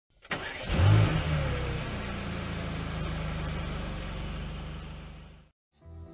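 Car engine starting: a sharp click, then a brief rev that falls back, settling into a steady idle that fades out and cuts off about five and a half seconds in.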